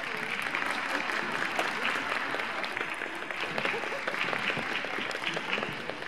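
Audience applauding, a dense steady clapping, with a few voices in the crowd.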